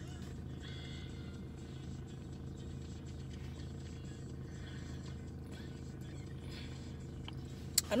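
Car engine idling while it warms up, with the heater blowing, heard from inside the cabin as a steady low hum.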